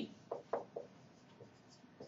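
A few short, soft taps or clicks in the first second, then quiet room tone.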